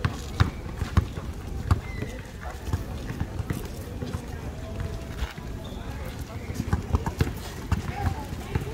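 Basketball bouncing on an asphalt court and players' sneakers running, heard as sharp, irregularly spaced thuds.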